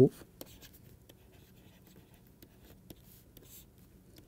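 A stylus writing a word on a tablet screen: faint, scattered taps and scratches of the pen tip.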